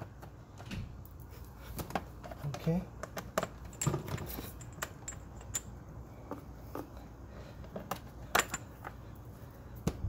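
Screws being backed out of a plastic chain cover with a screwdriver: irregular small clicks and taps of metal on plastic.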